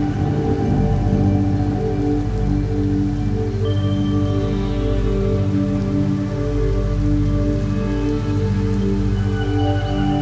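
Slow ambient meditation music: sustained, overlapping synth tones that shift to new notes every few seconds, over a steady soft rain-like hiss.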